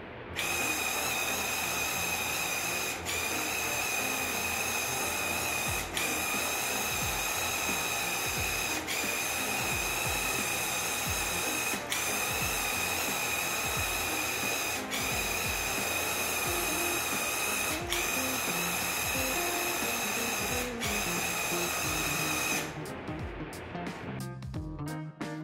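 Cordless handheld airless paint sprayer (Graco Ultra QuickShot) running while spraying a door, its motor-driven piston pump giving a steady high-pitched whine. The whine dips briefly about every three seconds and stops near the end.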